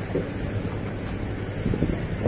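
A truck's engine running with a steady low rumble.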